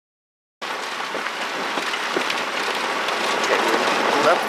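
Vehicle on a rough dirt road: a steady rushing noise with scattered rattling clicks, starting about half a second in after silence.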